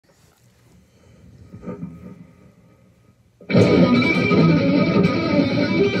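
Rios Guitar Co. P-Model electric guitar playing through effects: a few faint notes at first, then a little past halfway it comes in suddenly loud and full.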